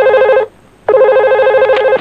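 Red push-button desk telephone ringing with a fast warbling electronic ring: one ring ends about half a second in, and the next starts about a second in and runs until the handset is lifted.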